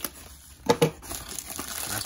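A plastic bubble mailer being slit open with a folding knife and then crinkling as hands pull it apart. Two sharp tearing sounds a little under a second in are the loudest part.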